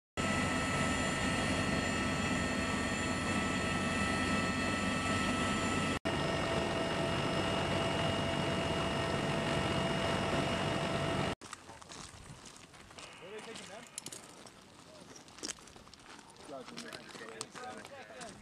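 Loud, steady drone of a military aircraft's cabin in flight, with several high steady whines over the engine and rotor noise. About eleven seconds in it cuts to much quieter outdoor sound: boots on rocky ground and men's voices, one calling "Hey".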